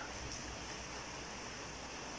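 Faint steady background hiss of room tone, with no distinct sound events.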